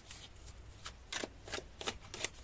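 A deck of oracle cards being shuffled by hand: soft, scattered flicks and slides of card on card, a few sharper clicks in the second half.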